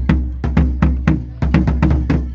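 Marching bass drum struck with mallets in a steady rhythm of about four beats a second, each stroke a deep boom. The strokes come quicker and closer together in the second half.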